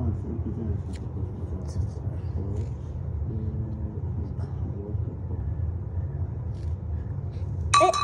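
Faint talking in the background over a steady low rumble, then a loud short vocal exclamation just before the end.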